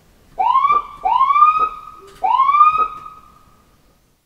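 Ambulance emergency siren giving three short rising whoops, each sweeping quickly up in pitch and then holding briefly. The last one fades out near the end.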